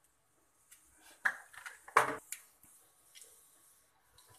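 Mustard and cumin seeds sizzling in hot oil in a pan: a faint hiss with a few sharp pops, the loudest about two seconds in.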